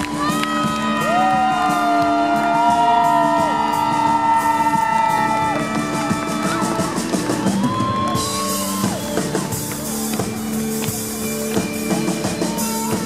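Live concert band holding long sustained tones over a steady chord, with a crowd cheering faintly underneath. About eight seconds in, a bright high hiss joins the music.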